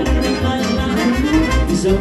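A live Moldovan lăutari band (taraf) playing dance music, accordion and violin carrying the tune over a steady bass beat.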